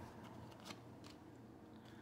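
Faint clicks and ticks of a tarot card being handled and laid onto the spread, the most distinct a little under a second in, over near silence.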